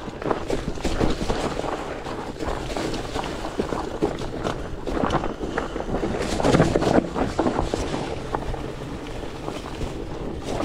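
Evo OMW rigid fat bike being ridden over rock and dry leaves: big fat tires rolling, with many small knocks and rattles from the bike and wind noise on the microphone. The sound swells for a moment about six to seven seconds in.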